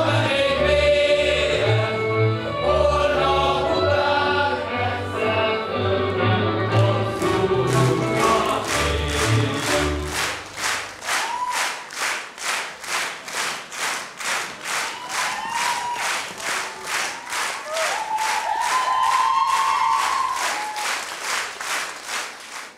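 Folk dance music with singing over a bass pulse, ending about ten seconds in. An audience then claps in unison, a steady rhythmic clapping of about three claps a second.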